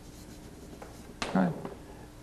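Chalk writing on a blackboard: a few faint taps and scratches as a word is chalked.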